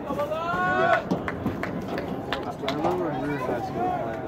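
Voices calling out across an outdoor soccer field: one long shouted call rising in pitch near the start, then several sharp knocks and another shorter call.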